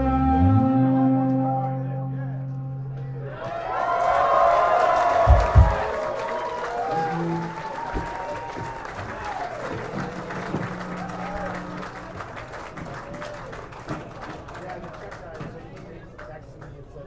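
A rock band's last chord of electric guitar and bass ringing out, with one low note sliding down, then a club audience cheering, whistling and clapping. Two short low thumps come about five seconds in, and the applause thins toward the end.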